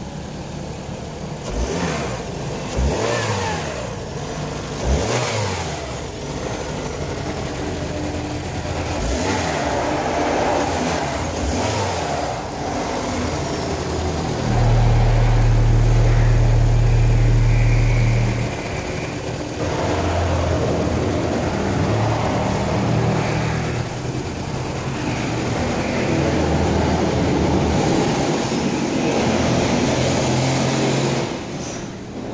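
2015 Toyota RAV4's 2.5-litre inline-four engine running, heard close up in the open engine bay, with a louder, steady stretch of about four seconds near the middle.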